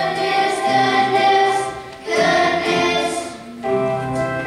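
Children's choir singing sustained notes, with short breaks between phrases about two seconds in and again shortly before the end.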